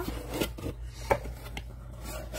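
Cardboard mailer box being opened by hand: the lid rubbing and scraping against the box, with a couple of light knocks, the louder one about a second in.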